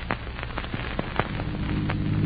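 Irregular clicks and crackle of old recording surface noise, with a low steady drone swelling in about two-thirds of the way through.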